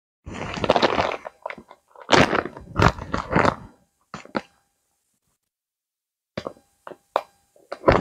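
Clear plastic wax-melt packaging being handled: irregular crinkling and rustling bursts, then a few short sharp clicks near the end.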